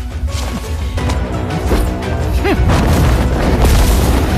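Dramatic orchestral-style score under heavy booming and crashing impact effects, building in loudness toward the end, with a few short swooping tones past the middle.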